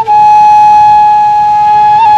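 A flute holding one long, steady note of a folk melody.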